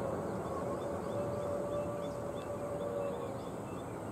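Outdoor ambience of an open ground: a steady rushing background with a faint held tone that starts about half a second in and fades out after three seconds.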